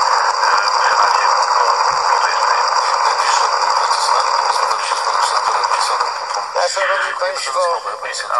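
Radio reception noise: a steady band of hiss with several steady high whistles, with a voice buried in it that comes through clearly about six and a half seconds in.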